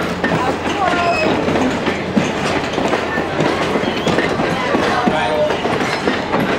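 Train of passenger coaches rolling past close by, a steady rumble of steel wheels on the rails.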